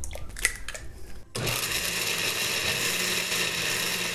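A few light clicks of eggs being cracked into a blender jar. Then, about a second and a half in, a countertop blender switches on and runs steadily, blending fresh corn kernels and raw eggs into batter.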